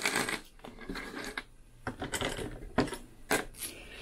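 Small steel screws, nuts and little metal motor-mount plates clinking against each other and the tabletop as they are tipped out of a plastic parts bag and handled: a few sharp separate metallic clicks.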